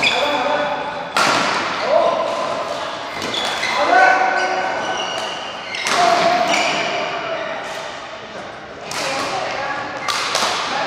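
Badminton rally: a string of sharp racket strikes on the shuttlecock, one every one to three seconds, echoing in a large hall, with shoes squeaking on the court floor between the hits.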